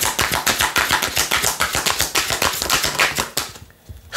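Oracle deck cards being thumbed rapidly off the deck from one hand into the other, a fast patter of card-on-card clicks about ten a second that stops about three and a half seconds in.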